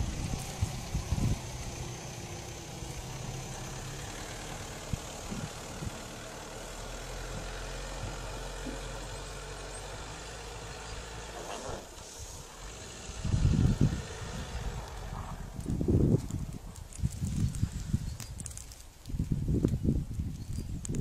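An Audi quattro's engine running as the car pushes through deep snow: a steady low hum for the first half, then louder, uneven bursts of low rumble in the second half.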